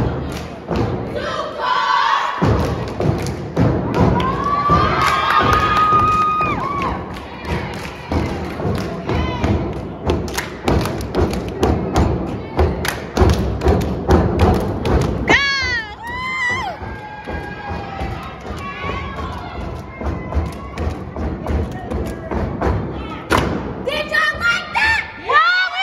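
A step team stomping on a stage floor and clapping in rhythm: many sharp thuds in quick succession. Crowd cheering and shouting throughout, with loud whoops about fifteen seconds in.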